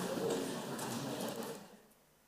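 Indistinct low voices murmuring in a hall, fading away to near silence about a second and a half in.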